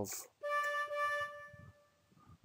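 A single synthesized flute note, D5, sounded by the Sibelius notation software as the note is entered on the flute staff. It starts about half a second in, holds steady on one pitch for just over a second and fades away.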